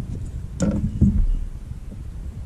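Wind rumbling on the microphone, with two knocks on the boat deck about half a second and a second in.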